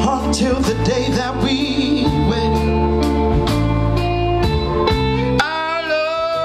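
A live soul band plays: drums keeping a steady beat under bass, electric guitar and keyboard. Near the end the bass drops away and a long note with a wavering vibrato comes in.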